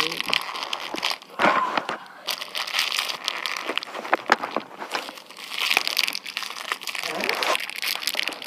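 Close crinkling and rustling of hands and a sleeve handling things right at the microphone, with scattered sharp little clicks.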